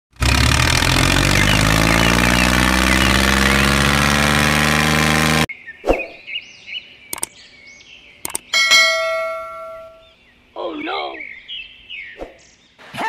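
Edited-in sound effects: a loud, dense sound rising in pitch for about five seconds, which cuts off abruptly. Then come a few sharp clicks and, about nine seconds in, a ringing bell-like ding that fades out, the kind of effect laid under a subscribe-button animation.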